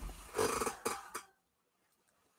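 A dog's short vocalization, followed by two brief sounds about a second in.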